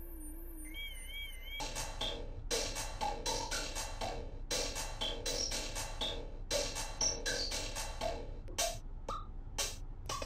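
Synthesizer music heard from a voice-memo recording: a warbling held tone for about a second and a half, then a drum-machine-style beat with short pitched blips, played through an echo effect.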